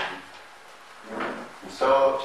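A person's voice speaking in short phrases with a pause between: one phrase ends at the start, another comes in about a second in and runs on near the end. The words are not made out.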